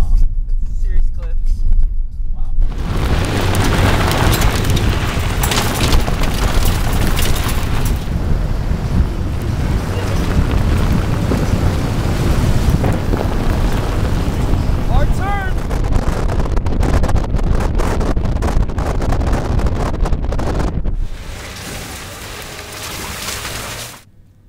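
Heavy wind buffeting on the microphone over the rumble of a small hatchback driving on a rough gravel road. A brief whoop comes about fifteen seconds in. Near the end the noise falls to a quieter rumble of tyres on gravel.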